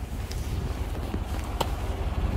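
Chevrolet Tahoe engine idling quietly, heard from outside close to the body as a steady low rumble, with a couple of faint taps.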